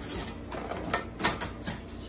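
Metal door latch and wire panels of a wire rabbit cage clicking and rattling as the cage door is unlatched and opened: a few sharp clicks, the loudest about a second and a quarter in.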